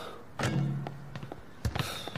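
A basketball bouncing on a hardwood gym floor: one loud ringing thud about half a second in, then lighter, quicker bounces and knocks near the end.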